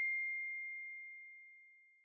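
The ring of a single high-pitched ding dying away: one steady tone that fades out about one and a half seconds in.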